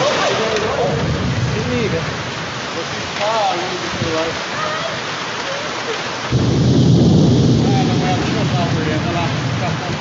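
Heavy storm rain pouring down in strong wind, a steady dense hiss. About six seconds in, a louder, deeper rumble sets in for a couple of seconds.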